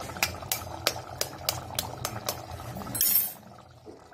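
An egg tapped repeatedly against the rim of an aluminium cooking pot: a run of light, evenly spaced clicks, about three a second, over the low bubbling of a simmering curry. A brief hiss follows about three seconds in.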